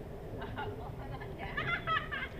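Faint background voices over a low, steady outdoor rumble, with a brief higher-pitched voice about one and a half seconds in.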